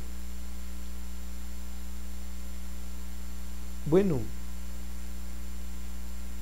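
Steady low electrical hum, with one short spoken word about four seconds in.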